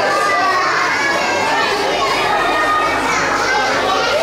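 Many voices talking and calling out at once, a dense, continuous crowd chatter with no single speaker standing out.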